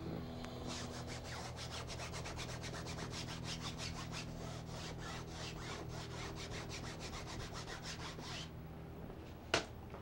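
Brush rubbing against a large wooden painting panel in rapid, even strokes, about six a second, that stop about eight and a half seconds in. A sharp click comes about a second later.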